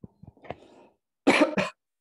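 A person coughs twice in quick succession, a little over a second in, after a softer throaty sound.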